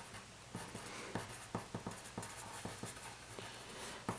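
Pencil writing on paper: a run of faint, quick, irregular scratching strokes as a few words are written out by hand.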